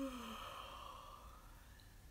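A woman yawning aloud: a short voiced note falling in pitch, then a long breathy exhale that fades out over about a second and a half.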